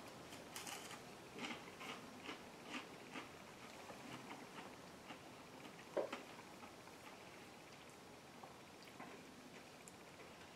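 Faint crunching and chewing as a crispy-crusted deep-fried mac and cheese bite is eaten, the crunches coming in quick succession over the first few seconds. One sharper click sounds about six seconds in.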